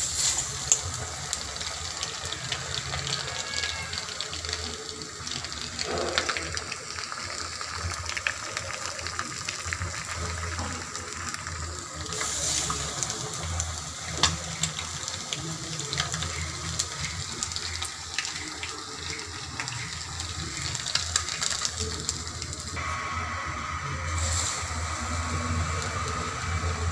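Batter-coated boiled egg halves deep-frying in hot oil in an iron kadai: a steady crackling sizzle that sets in at once as the egg goes into the oil.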